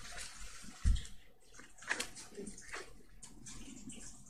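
Desk sounds from working a computer: a dull thump about a second in, then a couple of sharp key or mouse clicks around two seconds, over faint room noise.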